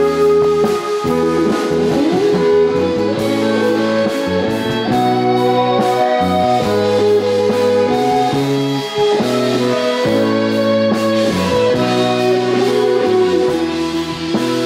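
A live band plays an instrumental introduction, with guitar, keyboards and drum kit sounding steadily before the vocal comes in.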